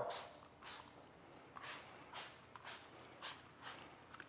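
Trigger spray bottle of Gyeon Wet Coat misting a car's wet paint: a series of about seven short, faint hissing sprays, roughly one every half second.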